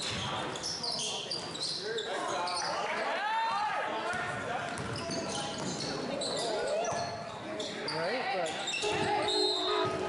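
Live sound of a basketball game in a school gym: the ball bouncing on the court amid players' and spectators' voices, echoing in the hall. Near the end, steady tones of background music come in.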